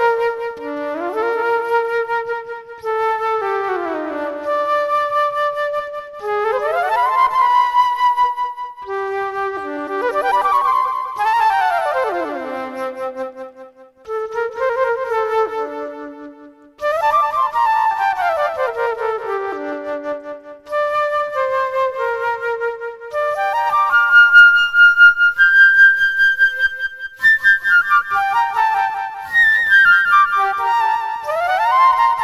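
Solo flute playing a free improvisation: quick falling runs of notes alternate with held tones, climbing to higher sustained notes in the later part, with a couple of brief gaps between phrases.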